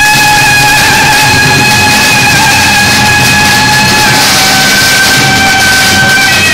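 A string of firecrackers crackling on the street, with a loud held note from a reedy wind instrument over it that steps down in pitch about four seconds in.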